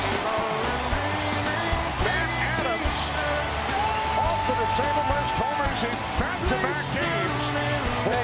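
Rock music with a singing voice and a steady bass line.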